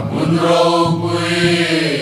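Mixed choir of men's and women's voices singing a Mizo hymn in harmony, holding long notes.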